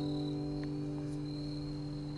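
The final strummed chord of an acoustic guitar ringing out and slowly fading, with a thin, steady high tone above it.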